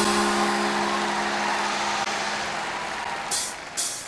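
Live acoustic rock band letting a held low note ring out and slowly fade under a noisy wash. Near the end, a few short, sharp high ticks come about twice a second, like hi-hat taps from the drummer.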